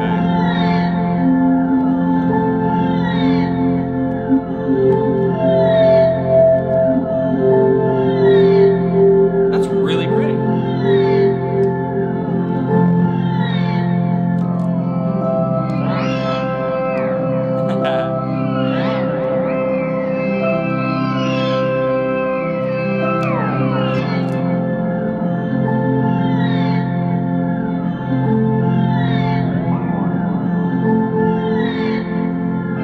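Held, organ-like chords from a one-string shovel played through pitch-shifter and octave pedals and a looper, with a short high figure repeating about every one and a half seconds. In the middle, pitch glides sweep over the drone.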